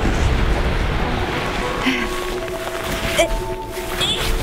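Rushing, rumbling wind noise on the microphone and snow scraping as a person slides down a snowy slope. Faint steady music notes come in about halfway through.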